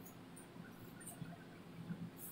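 Faint room tone: a low steady hum with a few soft, scattered clicks.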